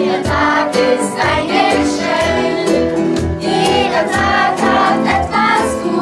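A children's choir with a few adult voices singing a religious song, accompanied by strummed acoustic guitar and electric piano, with a steady strummed beat.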